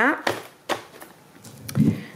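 Grocery packages being handled and set down on a table: two sharp knocks in the first second, then a duller thump near the end.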